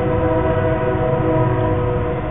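A train horn holding a long, steady blast of several tones sounding together.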